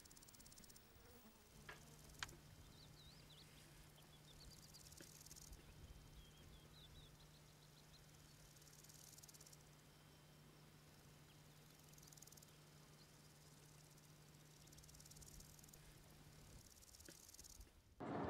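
Faint insects stridulating in high-pitched stretches of a second or two that recur every few seconds, over a faint low steady hum.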